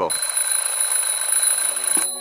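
An alarm clock ringing steadily, then cutting off suddenly at the end.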